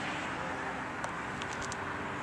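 Steady background hum and hiss, with a few faint clicks in the second half.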